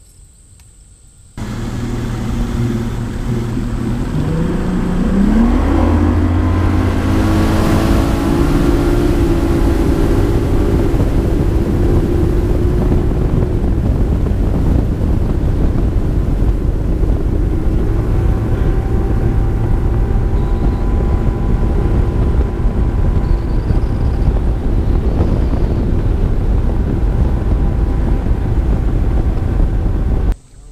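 Bass boat's outboard motor cutting in loud about a second and a half in, revving up with a rising pitch over a couple of seconds, then running steadily at speed.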